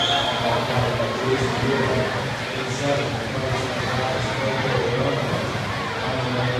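Indistinct voices of spectators echoing in an indoor pool hall over a steady low hum.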